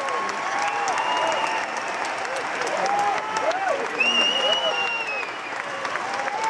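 Large concert audience applauding and cheering, with scattered voices calling out and a high whistle-like tone about four seconds in.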